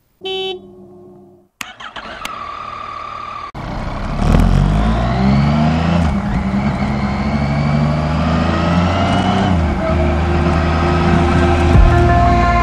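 Yamaha Tracer's three-cylinder engine pulling away and accelerating, its note rising and then dropping at gear changes, with wind noise on the microphone. Before it, in the first few seconds, there is a short beep and a couple of clicks.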